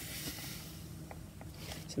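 Faint rubbing of a small travel iron being pushed back and forth over dyed lace on paper, with a few faint light ticks in the second half.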